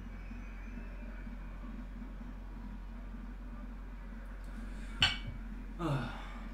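Steady low room hum with a single sharp click about five seconds in, followed just before the end by a short voiced sound from the man, falling in pitch.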